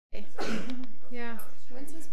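Indistinct speech in a small room, over a faint steady low hum.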